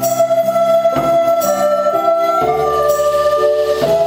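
A recorder orchestra playing slow, sustained chords in several parts, the harmony moving to a new chord about every second or so.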